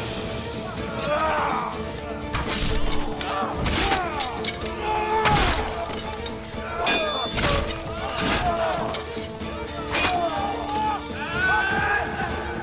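Battle-scene soundtrack: a steady music bed under about half a dozen sharp crashing impacts and wordless shouting voices.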